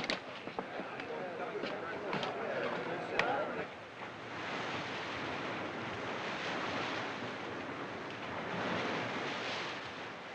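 Sea water rushing and breaking along the hull of a sailing ship under way, a steady wash that comes in about four seconds in. Before it, faint murmuring crew voices and a few light knocks.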